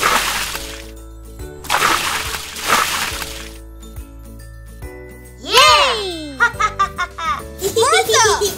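Cartoon water sound effects: a splash right at the start and a longer gush of water about two seconds in as a dug hole fills into a pond, over light background music. Near the end a character's voice exclaims.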